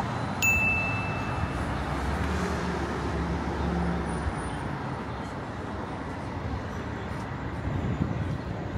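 Steady city street traffic noise, with the low rumble of a passing vehicle through the first few seconds. A short, high chime rings just after the start and fades within about a second.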